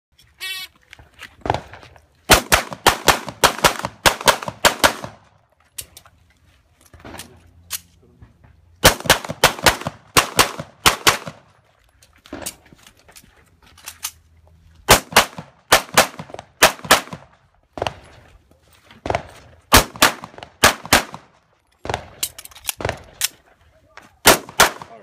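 A shot-timer start beep, then a semi-automatic pistol fired in several rapid strings of shots with pauses of a few seconds between them as the shooter moves between positions.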